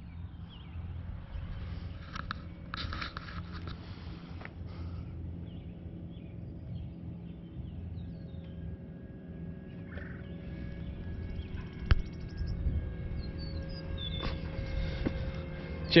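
Steady low outdoor rumble with faint distant voices, and one sharp click about twelve seconds in.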